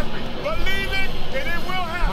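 A play-by-play announcer's excited, high-pitched shouting in two phrases over steady crowd noise, from an archival game broadcast.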